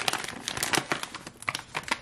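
Plastic snack pouch crinkling in the hands as it is torn open along its tear strip, with irregular crackling.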